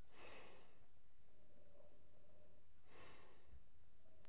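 Two short, faint sniffs through the nose, about three seconds apart, as a man noses whisky from a tasting glass held under his nose.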